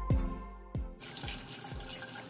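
Water from a bathroom sink tap running and splashing as a face is rinsed, coming in about a second in, after a few plucked notes of background music.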